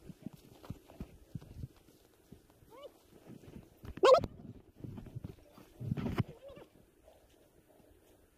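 Animal cries: a short rising cry near three seconds in, a loud call with a bending pitch about four seconds in, and another loud call around six seconds in.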